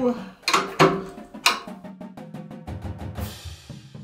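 Marching tenor drum head being tapped with a stick, lug by lug, to check its tuning: a run of short, sharp drum taps, several in quick succession. The new head is being brought up to even tension, with some lugs found lower than others.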